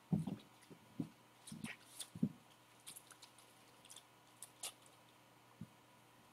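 Faint, scattered short clicks and soft low thumps in a quiet room, several close together in the first couple of seconds, then only a few more spread out.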